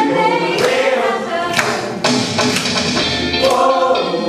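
Show choir of mixed voices singing an upbeat song in harmony, with a steady beat of percussive accents about once a second underneath.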